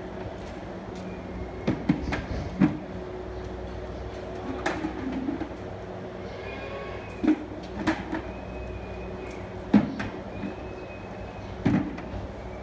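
Plastic calf teat buckets being handled and stacked: a series of hollow knocks and clatters every second or two as buckets are set down and pushed onto one another, over a steady low hum.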